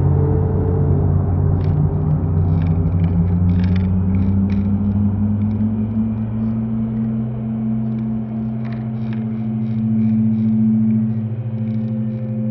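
Escalator running: a loud, steady low machine hum, one tone of which rises in pitch over the first few seconds and then holds, with scattered light clicks from the moving steps.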